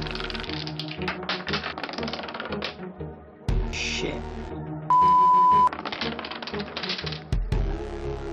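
Wooden Jenga blocks toppling one into the next as dominoes, a rapid clattering run of wooden clacks that pauses briefly about three seconds in and then runs on. A loud steady beep sounds for under a second about five seconds in, with music underneath throughout.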